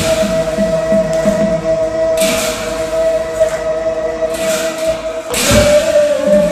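Assamese devotional naam music: a long steady held note, with clashes of large hand cymbals (bhortal) about two seconds in, again near four and a half seconds, and near the end.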